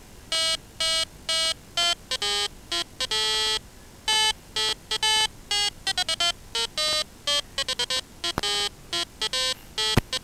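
A rapid, irregular run of electronic beeps at changing pitches, some short chirps and some held about half a second, with a quick flurry of short beeps around six to eight seconds in.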